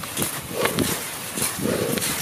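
Cross-country skier breathing hard under interval effort, loud, rhythmic, voiced gasps about once a second, with crisp scraping of skis and poles on snow between them.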